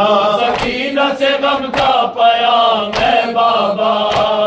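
A group of men chanting an Urdu noha (Shia lament) in unison, long wavering sung lines. Three sharp beats about 1.2 seconds apart keep time under the voices, in the manner of matam chest-beating.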